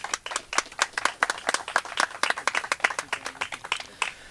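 Applause from a small group of people: many overlapping hand claps that stop just before the end.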